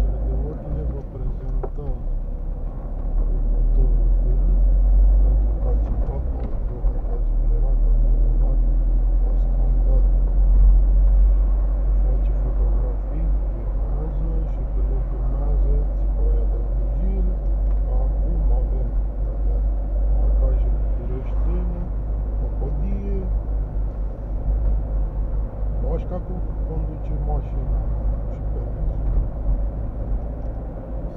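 Car driving in town, heard from inside the cabin: a steady low engine and road rumble, with faint, indistinct voices over it.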